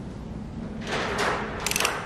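Ratchet wrench working a camshaft bolt to turn the camshaft over by hand. There is a brief scraping noise about a second in, then a quick run of ratchet clicks near the end.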